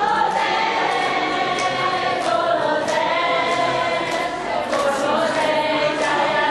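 A group of Vaishnava devotees chanting together in unison, a devotional kirtan sung in long, slowly gliding notes. Sharp short strikes cut through the singing about every half second.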